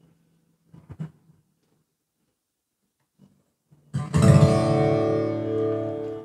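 Acoustic guitar strummed about four seconds in, the chord's many notes ringing on and slowly fading. Before it, near silence with one faint brief sound about a second in.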